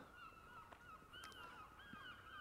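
Faint, distant birds calling: a run of short, wavering calls repeating through an otherwise near-silent pause.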